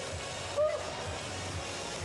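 Music playing over a steady arena hubbub, with a short voice about half a second in.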